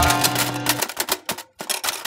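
A music cue ends on a held chord with a low bass note, then a rapid run of typewriter key clicks follows, used as a sound effect while a caption types in.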